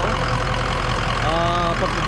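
Ford 6.0 Power Stroke turbo-diesel V8 idling steadily with an even low pulse.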